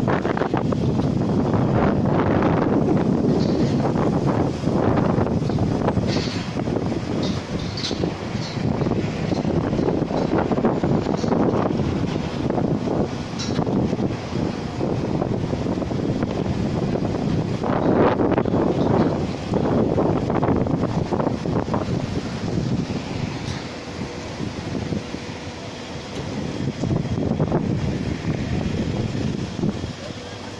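Gusty wind buffeting the microphone, a dense low rush that swells and falls, easing off somewhat about three-quarters of the way through.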